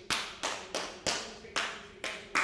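Hand claps beating out a hemiola rhythm, groups of three against groups of two. There are about six sharp claps at uneven spacing, each with a short ring of hall reverberation.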